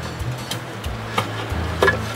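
A few metal knocks and clunks as a 1980 Evinrude 25 hp outboard powerhead is set down and shifted onto its housing, the two clearest a little past the middle and near the end, over background music.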